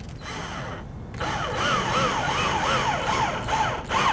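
Cordless drill running, starting about a second in, its motor whine rising and falling in pitch about twice a second as the trigger is worked.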